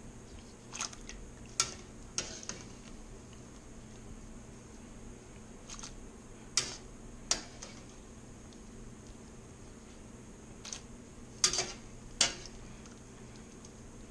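A wire hand strainer clinking against a pot of boiling water while blanched green beans are scooped out: a few sharp clicks come in three short clusters over a steady low background.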